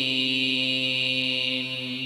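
A man's voice reciting the Quran in chanted style, holding one long, steady note that begins to fade near the end.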